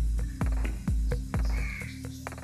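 Background electronic music with a steady kick-drum beat, about two beats a second.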